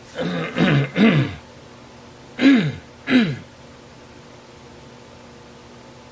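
A man clearing his throat and coughing in two bouts: three short voiced hacks with falling pitch in the first second and a half, then two more about two and a half seconds in. After that there is only a faint steady room hum.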